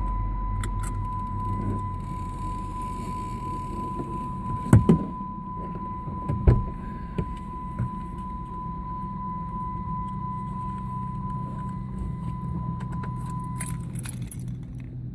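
A steady high electronic tone that stops just before the end, over a low hum, with two sharp knocks about five and six and a half seconds in and a few lighter ticks after them.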